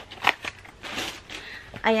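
Rustling and crinkling of a shoe's packing wrap as an ankle boot is handled, with a few short crackles. A woman says a short word near the end.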